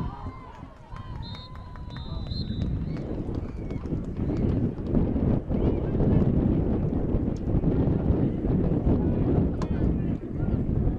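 Wind buffeting the microphone, a low rumble that swells after the first couple of seconds and stays loud, over faint voices.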